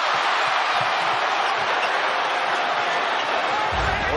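Large arena crowd cheering, a steady wash of many voices with no single voice standing out. A low rumble comes in just before the end.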